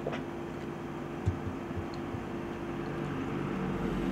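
Steady room air-conditioner noise: an even hiss with a faint constant hum, and a small click about a second in.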